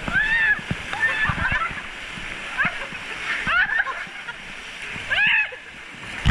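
Wave-pool water churning and splashing around an inflatable ring as artificial waves break. Several short, high-pitched shouts from people in the water cut through it, the loudest about five seconds in.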